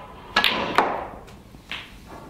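Snooker balls clicking: a sharp click about half a second in, then a second about a second in. A softer knock near the end goes with a red being potted.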